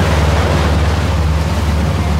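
Boat engine running steadily as a low hum while the boat is under way, with water rushing along the hull and wind noise on the microphone.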